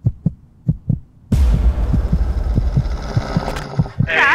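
Soundtrack heartbeat effect: low double thumps, lub-dub, a little more often than once a second. About a second and a half in, a loud low rumbling drone cuts in suddenly, and the beat goes on beneath it.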